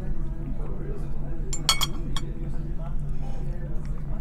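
Metal spoon clinking against a china dessert bowl, a few sharp ringing clinks about halfway through, over faint background chatter and a low steady hum.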